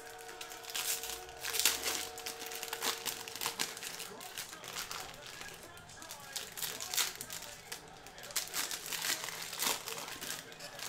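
Baseball trading cards being handled and flipped through: irregular light clicks and rustles of card stock, with crinkling of a foil pack wrapper.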